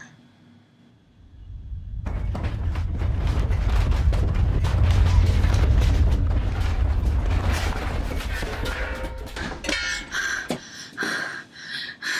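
Deep rumble of a room shaking in an earthquake, with rattling and knocking of loose objects. It builds after about a second, is loudest midway and dies down, leaving a few separate knocks and a short higher-pitched sound near the end.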